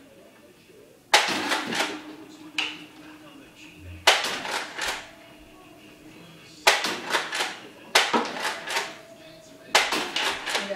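Nerf Vortex disc blaster fired five times in single-fire mode, shots coming one to three seconds apart. Each shot is a sharp snap followed by a short run of clattering clicks as the disc lands and skips on the hard floor.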